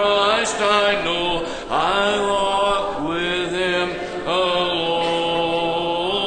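Congregation singing a hymn a cappella, many voices holding long notes together and moving from note to note, with brief breaks between phrases.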